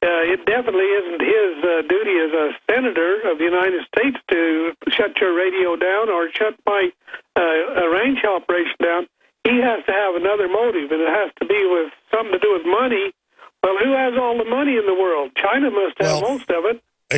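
A person talking continuously with short pauses. The voice sounds thin, as over a telephone or radio call-in line.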